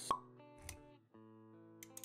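Intro music with held notes, and a sharp pop sound effect just after the start, then a soft low thud a little over half a second in. The music drops out briefly around one second and comes back in.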